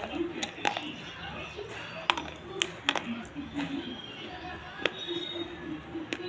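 Close-up chewing and crunching of a snack, with sharp, crisp crackles coming irregularly a few times a second over a low murmur.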